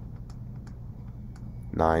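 Faint, irregular light clicks and taps from a stylus on a drawing tablet as an equation is handwritten, over a low steady hum. A voice says 'nine' near the end.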